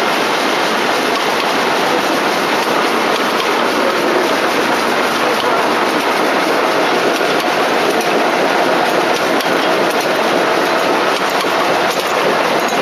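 Textile machinery running: a loud, steady mechanical clatter that keeps an even level, with no let-up.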